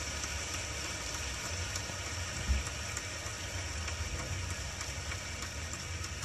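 Steady low rumble and hiss of a car cabin, with one faint knock about two and a half seconds in.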